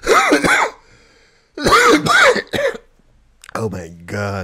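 A man laughing hard: two high-pitched squealing bursts of laughter, then lower laughter near the end.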